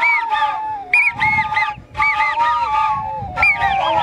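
A group of long Andean wooden flutes playing a shrill melody in short repeated phrases, with swooping notes over a steady held lower tone.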